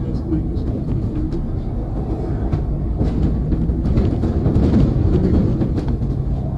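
Interior of a double-decker bus on the move: a steady low rumble of engine and road noise with frequent rattles and clicks from the bodywork. The whole track is pitched down.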